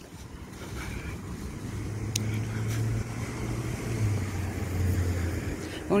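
A car driving past at low speed: its engine hum grows louder over the first couple of seconds, then drops a little in pitch about four seconds in as it goes by.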